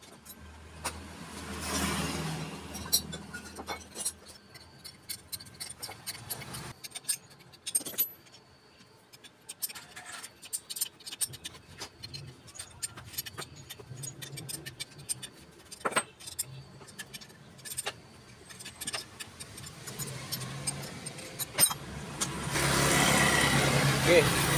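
Small metal clicks, taps and clinks of hand tools on a scooter's aluminium cylinder head as pliers and a wrench loosen the camshaft fastening and the camshaft is pulled out. A motor vehicle runs in the background near the start and again near the end.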